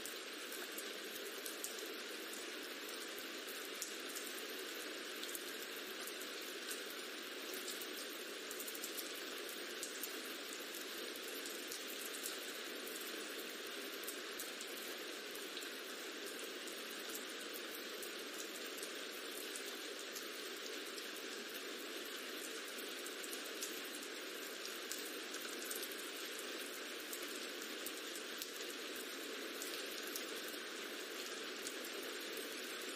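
Rain ambience track: steady rain with many small drop ticks scattered through it.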